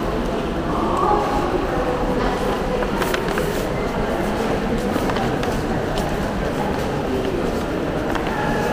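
Shopping-mall crowd noise in a large indoor concourse: a steady wash of background chatter from passing shoppers over a constant low hum, with a few light clicks about three seconds in.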